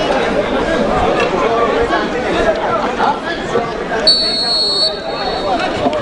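Spectators' crowd chatter, many overlapping voices talking at once. About four seconds in, a single high, steady whistle-like tone sounds for just under a second.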